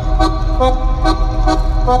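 Music played loud through a car audio system of two FI Audio BTL 15-inch subwoofers in a 6th-order wall, driven by an Audio Legion AL3500.1D amplifier, heard inside the cab. Heavy steady bass runs under a melody and a sharp beat about twice a second, and a vocal line comes in near the end.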